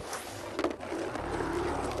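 Rolling, rushing sound effect of the next bingo ball travelling out of the draw machine, lasting nearly two seconds with a few clicks early in the roll.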